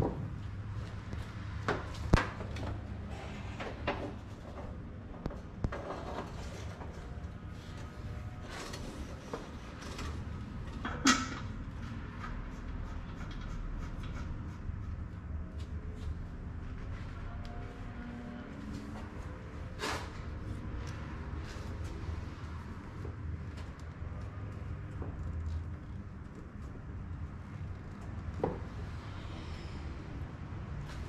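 Scattered clicks and knocks of hands fitting hoses and plastic fittings in an engine bay, a few sharper knocks standing out, over a steady low hum.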